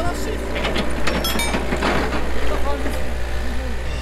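Hitachi EX60 mini excavator's diesel engine running steadily under load, with a few short sharp clinks about a second in.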